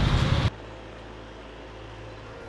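Outdoor street noise with a low vehicle-like rumble, cut off abruptly about half a second in. A faint, steady low hum follows.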